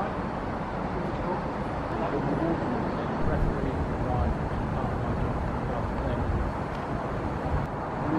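Steady low rumble of outdoor background noise, with faint indistinct voices in it.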